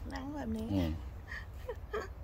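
A woman's voice: a short wordless exclamation in the first second whose pitch rises and falls, with a brief vocal sound near the end, over a steady low rumble.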